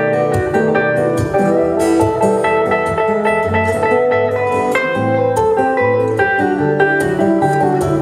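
Acoustic guitar and a hollow-body electric guitar playing together in a live duet, picked notes over a moving bass line.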